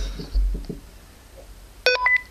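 A low handling thump about a third of a second in, then near the end a click and a short electronic beep as a Cobra microTALK FRS walkie-talkie is switched on.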